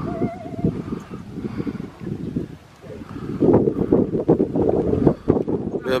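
Wind buffeting the microphone, a gusty low rumble that dies down briefly a little before the middle and swells again in the second half.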